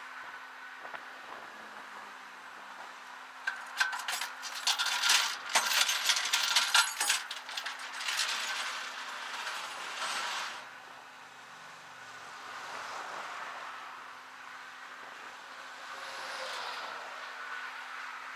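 Wind and road noise from the bed of a moving flatbed tow truck at highway speed, with a steady faint hum. From about four to ten seconds in comes a loud clattering, crackling stretch full of sharp clicks, then the steady road noise again, swelling near the end as traffic passes.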